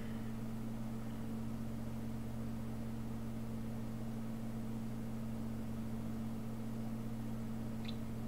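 Steady low hum with an even hiss: room tone, with no other sound standing out.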